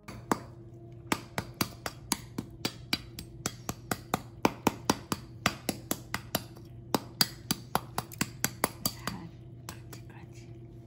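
A knife tapping on the roasted pork skin of a pernil: a quick run of sharp, hard taps, about three or four a second, that stops near the end. The hard, clicking taps are the sign that the skin has roasted crisp.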